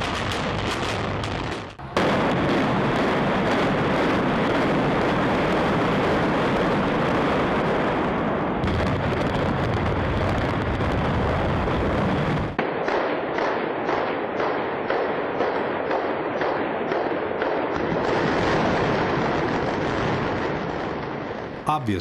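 Explosive demolition charges going off: a quick run of sharp bangs, then a long continuous roar lasting about ten seconds. The roar cuts off abruptly and is followed by a lower rumble with repeated cracks.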